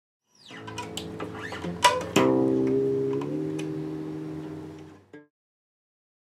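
Guitar played: light plucked notes, then a chord struck about two seconds in that rings and slowly fades before being cut off short near the end.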